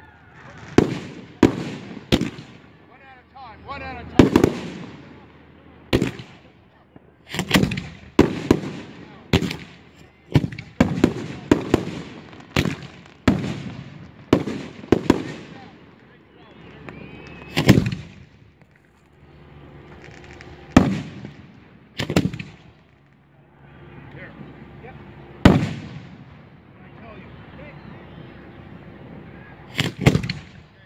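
Fireworks cakes firing: a rapid irregular barrage of sharp bangs as shells launch and burst overhead, thinning after about sixteen seconds to a few scattered bangs.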